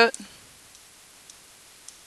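A few faint computer mouse clicks, spread over a second and a half, as keys are pressed on an on-screen calculator emulator.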